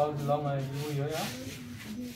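Felt-tip marker rubbing across a whiteboard in short strokes as words are written, with a voice speaking over it in the first part.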